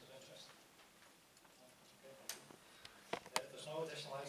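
Quiet meeting room with faint, low voices and three sharp clicks: one about two seconds in, then two louder ones close together about three seconds in.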